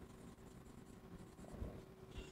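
Faint marker strokes on a whiteboard as a word is written, with a slight swell about one and a half seconds in.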